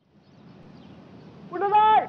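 A person's voice giving one loud, drawn-out, high call about one and a half seconds in, over a low outdoor background rumble.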